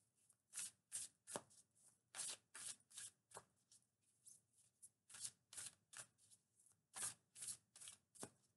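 A deck of oracle cards shuffled by hand: a faint run of short, soft swishes, two or three a second, with a brief lull midway.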